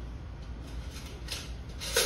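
Two short rubbing, scraping sounds over a low steady hum, the second louder, near the end.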